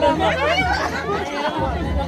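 Several people talking at once, overlapping chatter close by, over a steady low hum.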